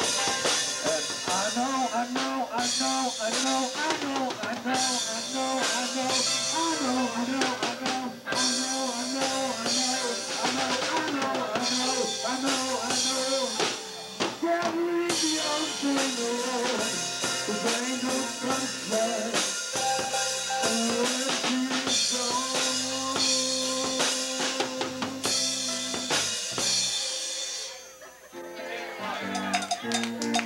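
Live band playing a song: a man singing into a microphone over electric guitars and a drum kit.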